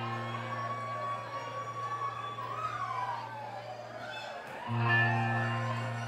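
Live rock band intro on amplified electric guitar and bass: a low chord rings out under a high sustained tone that bends up and then slides down in pitch midway. A new chord is struck about four and a half seconds in.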